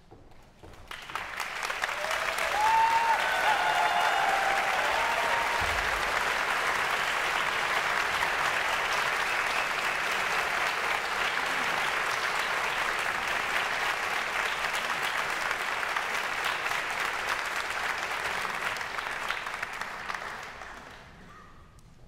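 Audience applauding, starting about a second in and quickly reaching a steady level, then dying away near the end.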